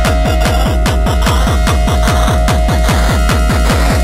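Frenchtek (hardtek) electronic dance track: a fast, steady kick-drum beat with each bass hit dropping in pitch, under a held synth tone and dense, noisy upper layers.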